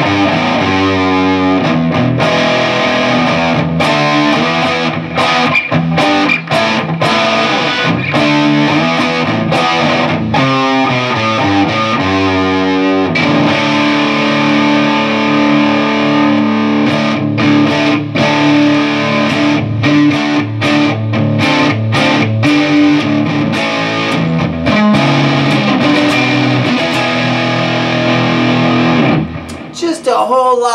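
BC Rich Bich double-neck electric guitar played on its six-string neck through a Hughes & Kettner Black Spirit 200 amp with a crunch overdrive tone. Chopped chords and riffs with short breaks give way to a long ringing chord about halfway through, and the playing stops just before the end.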